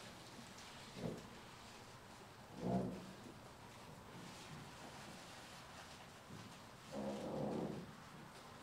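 Quiet room tone broken by a few brief, faint murmurs of a man's voice, the longest near the end.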